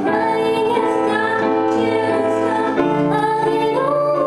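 A woman singing with her own upright piano accompaniment; a new chord with lower bass notes is struck about three seconds in.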